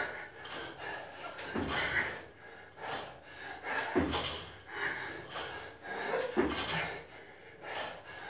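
A man's heavy, laboured breathing under a loaded barbell, with a forceful exhale about every two and a half seconds, one with each rep; the bar and plates rattle lightly as they move.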